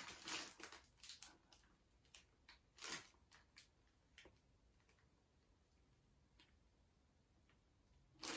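Near silence: room tone, with a few faint, short crinkles and clicks in the first four seconds as a plastic bag of salad leaves is handled.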